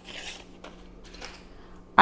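Hands handling a paper tracker and ring binder and picking up a coloured pencil: a soft rustle about a quarter second in, then a few faint light taps, over a faint steady hum.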